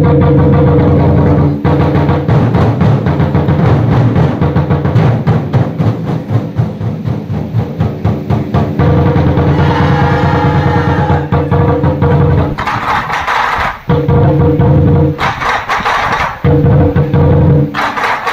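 Lion-dance drum ensemble playing an opening drum piece on several lion drums, a loud, fast run of strokes. In the last few seconds the playing breaks off briefly and comes back in several times.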